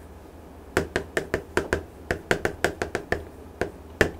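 Chalk writing on a chalkboard: a quick, uneven run of about a dozen sharp taps as the characters are stroked out, starting just under a second in and stopping shortly before the end.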